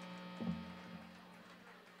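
Faint steady electrical hum from the stage amplifiers and sound system in a pause in the music, with a brief low thud about half a second in.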